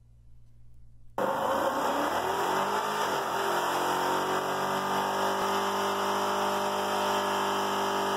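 Vehicle engine revving during a burnout, with tire noise, starting abruptly about a second in.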